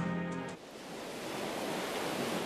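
Music stops about half a second in, and a steady wash of sea surf follows.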